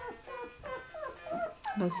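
A litter of Saint Bernard puppies whining and yelping, many short cries that rise and fall in pitch, overlapping several times a second.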